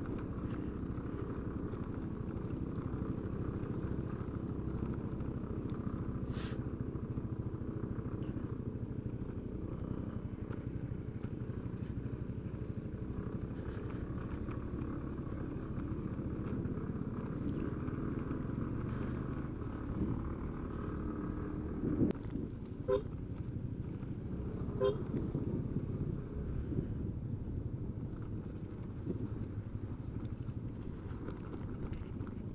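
Motorcycle engine running under way with steady road and wind rumble, heard from the rider's own bike. Two short beeps, like a horn toot, come about two-thirds of the way through.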